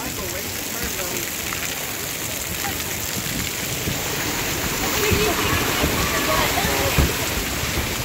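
Steady, rain-like hiss of water spraying and falling from a water-park play structure onto the splash pad and pool, with faint voices in the background around the middle.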